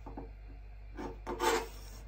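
Kitchen knife cutting apple against a wooden cutting board: a short faint scrape about a second in, then a louder scraping cut just after.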